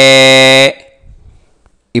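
A man's chanting voice holding one long, steady note at the end of a Sanskrit mantra syllable. It breaks off abruptly less than a second in.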